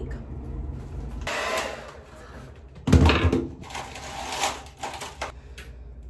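Rustling and clatter of hands handling hair and styling tools, with one sharp knock about three seconds in. A low hum stops a little over a second in.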